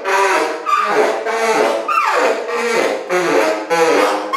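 Solo tenor saxophone playing improvised free jazz: short, hard-attacked notes in quick succession, about two a second, with a falling smear of pitch about halfway through.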